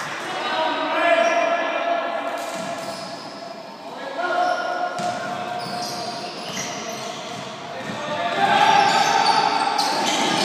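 Basketball game in a large echoing sports hall: the ball bouncing on the court amid shouting voices from players and spectators. The shouts are loudest about a second in and again near the end.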